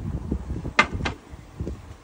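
Two sharp knocks about a quarter second apart, glass on glass, as an olive-oil bottle is set down on a glass tabletop, over a low background rumble.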